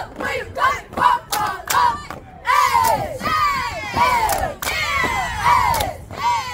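A squad of girls shouting a cheer in unison: short rhythmic shouts with sharp hits in time for about two seconds, then longer drawn-out yells that fall in pitch.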